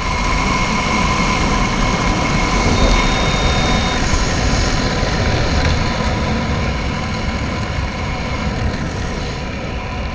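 Wind rushing and buffeting over a helmet camera's microphone during a parachute descent under an open canopy: a steady low rumble that eases a little toward the end.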